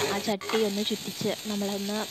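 Fish curry simmering in a clay pot on a gas stove, with a steady sizzle. Over it a person's voice carries drawn-out tones in the background.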